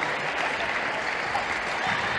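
Spectators applauding steadily.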